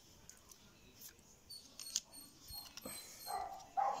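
Faint clicks and slides of glossy trading cards being handled and shuffled between the hands.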